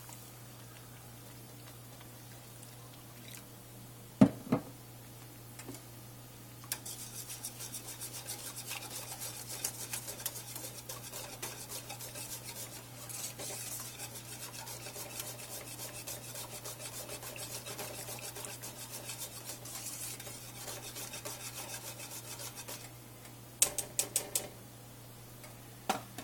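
Thick grits being stirred in a stainless steel saucepan, the utensil scraping rapidly and continuously against the pot for about sixteen seconds. A single sharp knock comes about four seconds in, and a few quick taps near the end; a low steady hum runs underneath.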